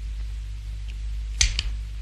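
Two sharp clicks about a second and a half in, a fraction of a second apart, from a cigarette lighter being flicked, over a steady low hum.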